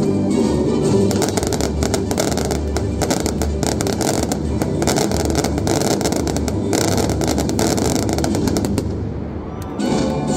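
Fireworks going off in quick succession, a dense run of cracks and bangs over a deep rumble, thinning out shortly before the end, with music faintly underneath.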